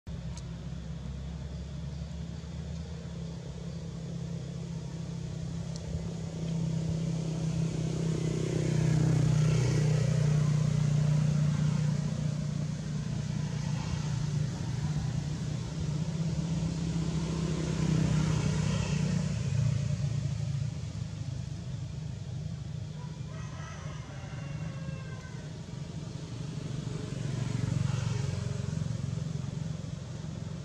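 Low engine hum of passing motor vehicles, swelling and fading three times as they go by.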